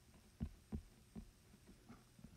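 Faint, soft low taps of a stylus touching down on an iPad screen while handwriting, about four of them spread across two seconds.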